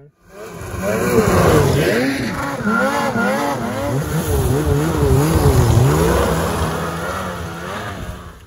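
Polaris RMK Khaos Boost's turbocharged 850 two-stroke snowmobile engine being ridden in deep snow, its revs rising and falling over and over with the throttle. It starts about half a second in and fades near the end.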